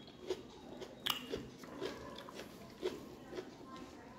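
Close-miked chewing of a mouthful of rice and fish curry: soft, wet mouth clicks and smacks, a handful of them, the loudest about a second in and near three seconds. Fingers mixing rice on the plate add faint rustling.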